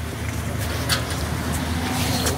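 A minivan's engine running low and steady as it creeps forward, with outdoor background noise and a few faint clicks.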